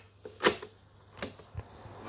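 Plastic-and-metal mechanical clicks from a Sony CF-1980V radio-cassette recorder as its cassette door is pushed shut on a loaded tape and its keys are worked: one sharp click about half a second in, then two lighter clicks near the end.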